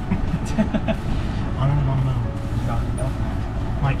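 Steady low rumble of wind buffeting the microphone on an open boat, with indistinct voices in the background.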